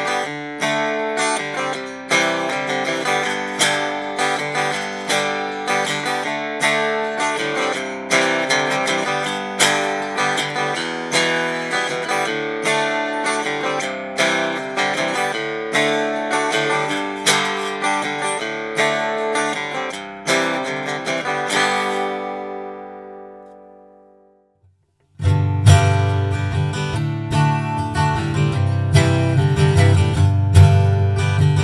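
1968 Gibson J-200 acoustic guitar played through the LR Baggs Anthem TruMic alone, recorded direct without EQ: chords and picked notes with little bass, a sound the owner finds shrill and trebly. The last chord rings out to silence. About 25 seconds in, the same guitar starts again through a Fishman Rare Earth Blend pickup, much fuller in the bass.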